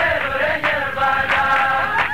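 A group of voices chanting a song together, with sharp beats about every two-thirds of a second keeping time.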